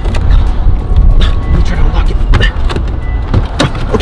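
Background music over the steady low rumble of a moving car heard inside the cabin, with a few sharp clicks as the rear door handle is worked.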